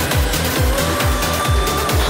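Electronic dance music with a steady kick-drum beat and long held synthesizer notes.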